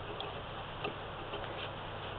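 Faint handling of cloth as fabric is folded and slid into place under a sewing machine's presser foot, with a few small ticks, over a low steady hum.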